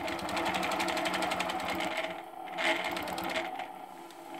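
Innova longarm quilting machine stitching: a rapid, even needle rhythm as it sews a straight line along a ruler, fading in the second half as the stitching winds down.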